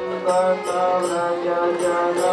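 Devotional chant sung to a melody over a steady low drone, with a metallic percussion beat about twice a second.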